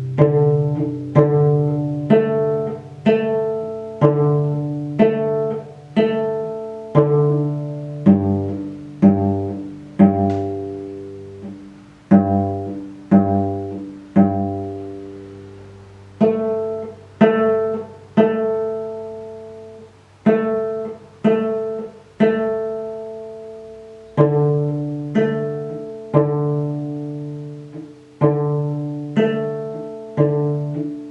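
Cello played pizzicato on its open strings: a slow, even melody of single plucked notes, about one or two a second, each note ringing out and fading before the next.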